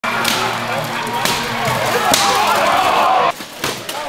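Blows landing on steel plate armour in an armoured melee, three or four sharp impacts about a second apart, over voices shouting.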